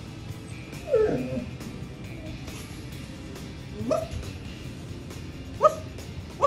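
Golden retriever puppy giving three short yipping barks: a falling yelp about a second in, a rising one near four seconds, and a brief sharp one near the end.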